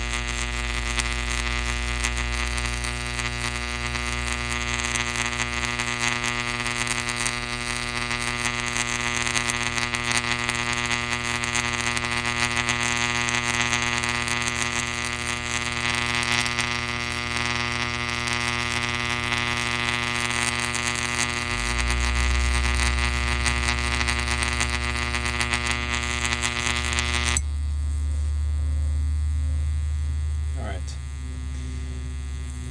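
Electric discharge glowing at the tip of a metal electrode touching water, giving a steady, crackly electrical buzz over a mains hum. The buzz cuts off suddenly near the end, leaving only a lower hum.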